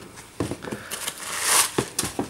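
Handling noise of a pair of sneakers being moved about and set on their cardboard shoebox: a few light knocks and a brushing rustle that swells in the second half.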